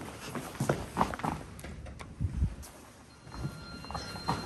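Footsteps on a hard tile floor, several irregular steps, fading out after about two and a half seconds. A faint steady high-pitched tone starts near the end.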